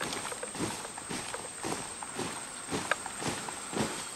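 A column of people marching in step on leaf-covered forest ground, their boots landing together about twice a second.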